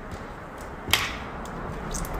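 A single sharp knock about a second in, with a short echo trailing after it, and a fainter click near the end.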